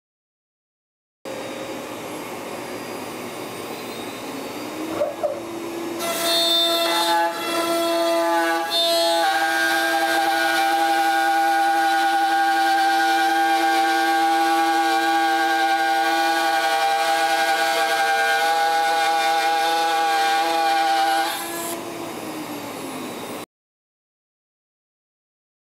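Carbide 3D 2.2 kW water-cooled spindle on a Shapeoko 5 Pro CNC router spinning up to 22,000 RPM, its pitch rising. About six seconds in, its 3/8-inch two-flute upcut end mill ramps into 3/4-inch plywood and cuts the full depth with a loud, steady, high-pitched whine. Near the end the bit leaves the cut and the spindle's pitch falls as it winds down, before the sound cuts off suddenly.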